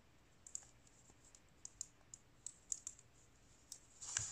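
A dozen or so faint, irregular clicks of metal-tipped circular knitting needles tapping together as stitches are worked.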